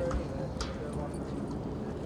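Indistinct chatter of people talking around a sports field, over a low outdoor rumble.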